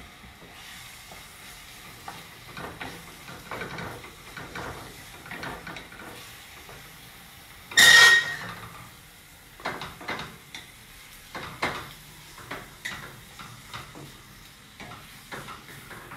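Wooden spatula stirring and scraping crumbled tofu and garlic in a stainless steel skillet over a gas flame, with a faint sizzle of frying and scattered short scrapes. One loud clank rings out about halfway through.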